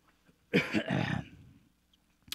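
A man clearing his throat, two rough bursts about half a second in, the second one longer and trailing off.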